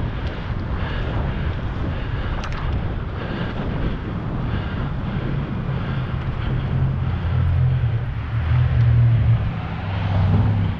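Wind rushing over the microphone of a moving bicycle, steady throughout, with a low rumble that grows louder toward the end.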